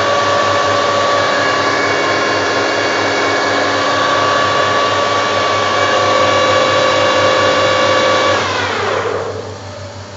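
Metal-turning lathe running with a steady whine from its motor and gearing, then switched off about eight seconds in, its pitch falling as the spindle winds down.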